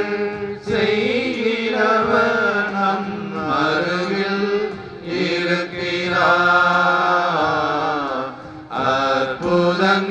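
A man singing a slow Tamil devotional hymn into a public-address microphone, drawing out long, wavering notes in a chant-like melody over a steady low held note. He pauses briefly for breath about halfway through and again near the end.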